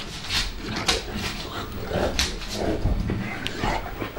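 Neapolitan mastiffs play-wrestling, making a string of short, irregular dog vocal noises.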